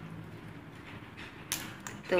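African grey parrot feeding with its beak in a ceramic bowl of seed mix: faint shuffling of seeds, then a sharp crack about one and a half seconds in and a smaller one just after.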